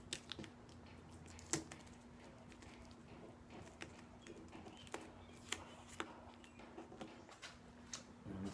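Blue painter's tape being peeled off the plastic Tour-Pak shell by hand: faint crinkling with a handful of sharp little clicks scattered through, over a faint steady hum.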